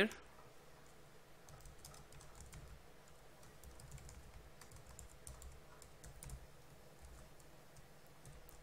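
Faint typing on a computer keyboard: an irregular run of light keystrokes.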